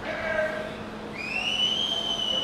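A loud, high whistle from the audience that slides up in pitch about a second in and then holds steady, over a faint low hum.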